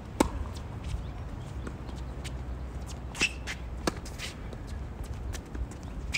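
Tennis rally on an outdoor hard court: sharp pops of racquets striking the ball, the loudest just after the start and more about three and four seconds in, with ball bounces and the scuff of players' shoes between.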